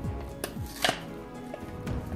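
Two light clicks about half a second apart, the second the sharper, over soft background music.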